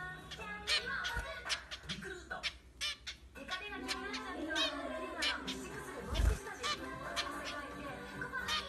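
A small finch calling with short, sharp chirps repeated many times, under a bed of voices and music.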